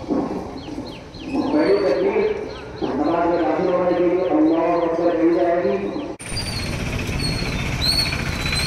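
A man's voice chanting in long, drawn-out tones. About six seconds in the sound cuts suddenly to a steady outdoor background with birds chirping.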